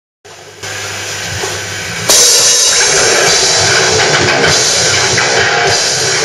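Death metal band playing live: drum kit with cymbals, quieter at first, then the full band comes in loud about two seconds in.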